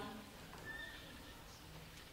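Quiet room tone of a large lecture hall with a seated audience, with a faint short squeak or high note about two-thirds of a second in.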